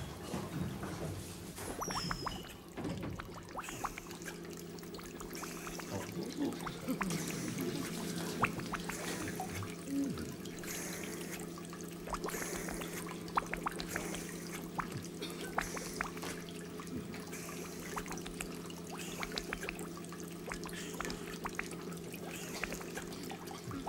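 Liquid bubbling and dripping in glass laboratory apparatus: a continual scatter of small drips and gurgles over a steady low hum.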